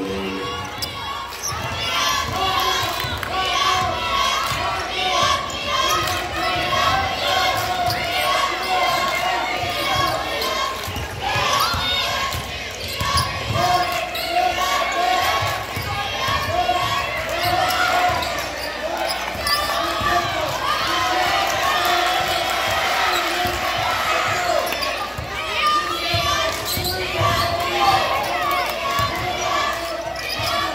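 Basketball being dribbled and bouncing on a hardwood gym floor during live play, over crowd voices echoing in a large gym.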